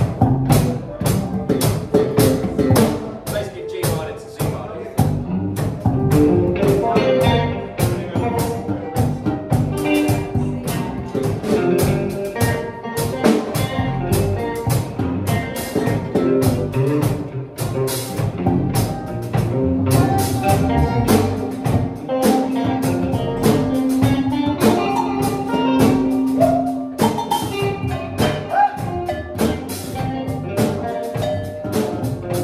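Small live band jamming: a drum kit keeps a steady beat under bass, electric guitar, keyboard and violin. One long note is held from about two-thirds of the way in until near the end.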